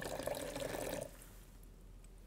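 Water pouring in a thin stream from a small stainless steel pot into a plastic measuring mug, stopping about a second in.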